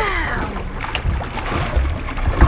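Water splashing and sloshing at the side of a boat as a hooked bull shark rolls at the surface, with wind rumbling on the microphone. A short falling pitched sound at the very start.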